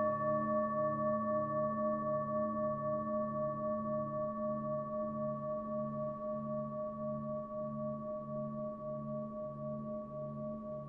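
Singing bowl tuned to the note A, ringing on in a long sustained tone that slowly fades, with a pulsing waver about twice a second.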